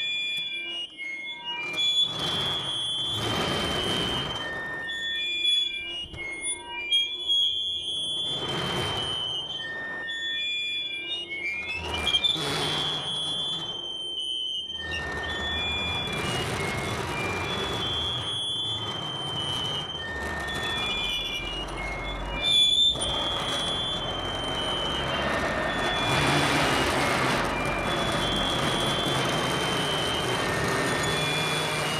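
Live experimental piece for percussion and electronics: high-pitched feedback tones hold and switch pitch over swells of noise and a few sharp hits, with a rising whine about twelve seconds in. From about halfway it thickens into a dense wash of noise with a low rumble underneath.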